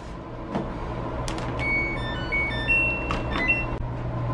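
Electronic clothes dryer control panel: a few button clicks, then a short tune of high electronic beeps at changing pitches, as the dryer is switched on and started.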